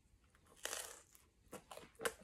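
A bite into a crispy Sicilian pizza slice: one short crunch of the crust about half a second in, then a few faint chewing sounds.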